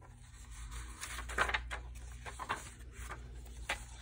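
Paper pages of a handmade junk journal being turned and handled, giving a few soft rustles and scrapes, the loudest about a second and a half in.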